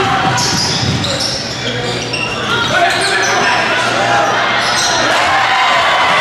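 Basketball game in a gym: a ball being dribbled and brief high-pitched squeaks of sneakers on the hardwood as players run the floor, over the hum of voices in the crowd.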